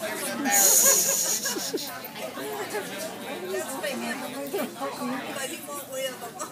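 Indistinct chatter of many people talking at once, with a brief loud hiss about half a second in.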